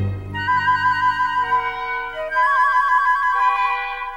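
Orchestral library music: high held woodwind notes with quick trills, a light thin passage after a low chord dies away at the start.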